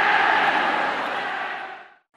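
Large crowd cheering, fading out to silence near the end.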